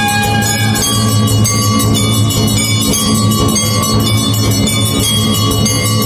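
Temple bells ringing continuously and loudly during the arati, a dense, unbroken clangour of overlapping ringing tones.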